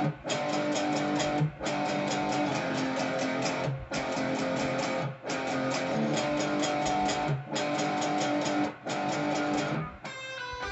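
Schecter electric guitar in drop D tuning playing a low power-chord riff with rapid, even picking, broken by brief gaps every one to two seconds.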